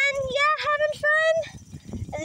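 A high-pitched, sing-song human voice in a few short held notes, without clear words.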